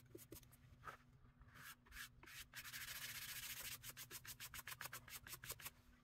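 Faint, quick back-and-forth strokes of a flat paintbrush scrubbing gouache onto textured watercolor postcard paper, running into a longer stretch of continuous rubbing about halfway through.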